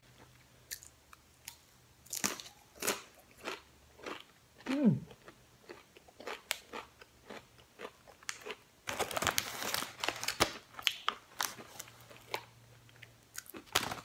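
Thick potato chips (Rap Snacks Sour Cream with a Dab of Ranch) crunching as a person bites and chews them, with sharp crackles throughout and a dense run of crunching about nine seconds in. A short falling vocal sound comes about five seconds in.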